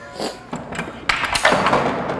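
A few short knocks followed by a scraping clatter as a wooden spear and other practice weapons are picked up off a concrete floor.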